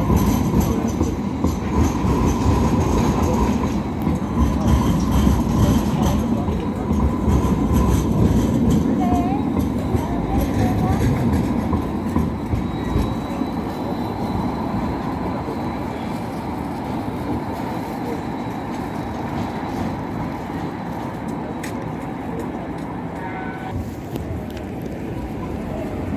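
Light rail tram running past at street level: a steady rumble of wheels on the rails, loudest over the first half and slowly fading as it moves away.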